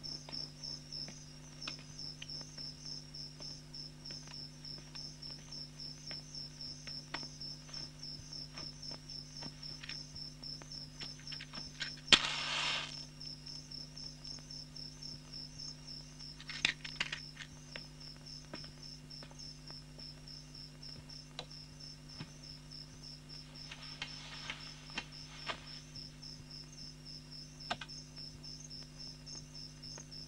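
Faint night ambience of crickets chirping steadily, an even pulsing trill that runs on without a break, over a low steady hum. A few light clicks and short rustling noises break in, the clearest about twelve seconds in.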